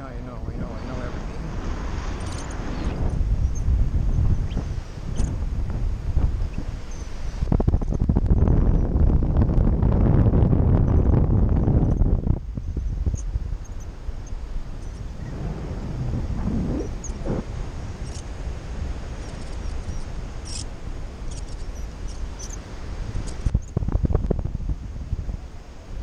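Wind rushing over the microphone of a helmet- or hand-mounted action camera in paragliding flight, a low buffeting roar that swells strongest about eight to twelve seconds in, then eases and gusts unevenly.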